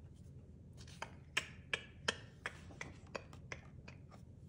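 Paper pages of a hardcover picture book being turned and pressed flat by hand: a faint run of short crisp clicks and rustles, several a second, starting about a second in.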